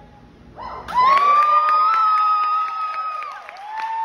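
Audience cheering as a performance ends: a long, high-pitched whoop starting about a second in and held for about two seconds, then a shorter whoop near the end, with scattered clapping.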